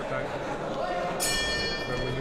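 A ring bell sounding once about a second in, with a high metallic ringing that carries on: the signal that the second round is starting. Voices murmur underneath.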